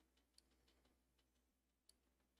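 Near silence: faint room tone with a couple of faint clicks.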